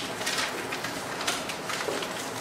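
Dry-erase marker squeaking and scratching on a whiteboard in several short strokes as a correction is written in.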